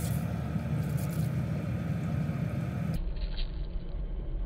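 A car engine idling with a steady low rumble while it warms up on a frosty morning, its windscreen still iced over. About three seconds in the sound turns duller.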